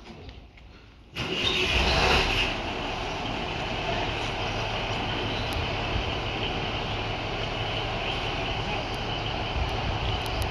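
Class 153 diesel railcar's Cummins engine starting up about a second in, loud at first, then settling into a steady idle.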